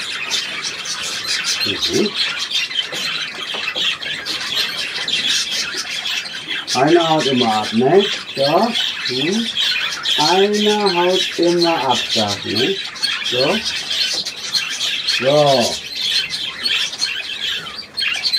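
A roomful of budgerigars chattering and squawking without a break, a dense, steady din of rapid high calls.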